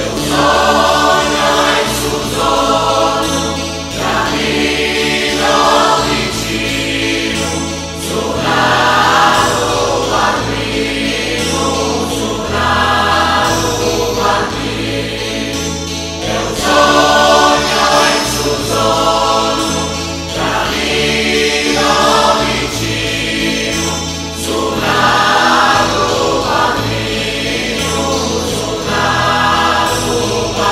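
A mixed choir of men and women singing a slow Christmas song in Sardinian, in phrases of a few seconds, accompanied by acoustic guitar.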